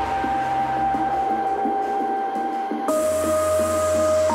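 Electronic music played loud through a Digital Designs Redline 506 subwoofer in a small ported box in a car trunk, with held synth notes over a steady deep bass. The bass and treble drop out for a moment just before three seconds in, then the full track comes back stronger.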